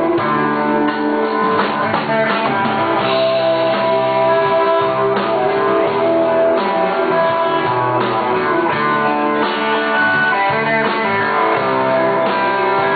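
Rock band playing live, with guitar to the fore over a steady beat.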